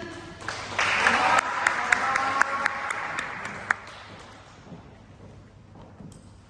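Spectators applauding a competitor who has just been introduced by name: the clapping starts about a second in with many sharp individual claps and voices calling out over it, then dies away by about four seconds.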